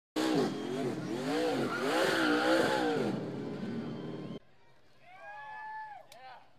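A NASCAR K&N Pro Series West stock car's engine revving up and down repeatedly in a smoky victory burnout, over the hiss and squeal of spinning tyres. It cuts off abruptly about four seconds in, leaving a much quieter stretch.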